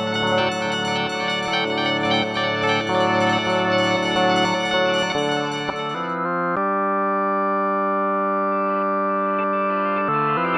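A guitar played through a Hologram Microcosm granular delay and looper pedal gives a dense, layered, shifting texture. About six seconds in, this gives way to a synthesizer chord held steady through the pedal.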